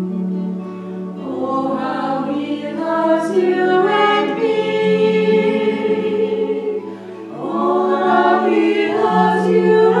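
A small group of four women singing a hymn together, with long, steady low notes held underneath. The singing eases off briefly about seven seconds in, then picks up again.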